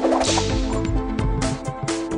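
Online slot game sound effects over the game's looping music: a bright noisy burst as winning fruit symbols explode, then two short hits near the end as new symbols drop onto the reels.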